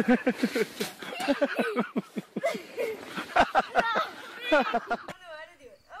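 People talking and laughing. About five seconds in, a cut brings in different, quieter voices.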